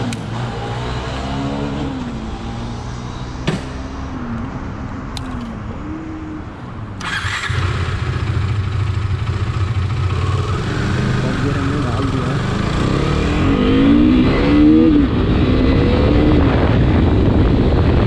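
KTM RC 390's single-cylinder engine pulling away and accelerating up through the gears, its revs rising and dropping back at each shift. Wind rush grows as the speed builds.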